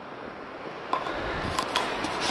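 Steady rushing noise of wind on the microphone, getting louder about a second in, with a few faint knocks.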